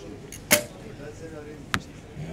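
Recurve bow shot: a sharp crack of the string as the arrow is released about half a second in, then a little over a second later a fainter sharp knock as the arrow strikes the target.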